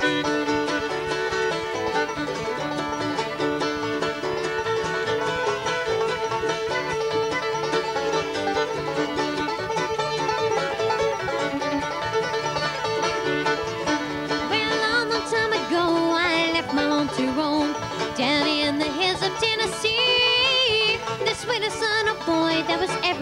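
A bluegrass string band of banjo, fiddle, mandolin, acoustic guitar and upright bass playing the instrumental introduction to a traditional song, with no singing yet. A wavering high melody line stands out in the second half.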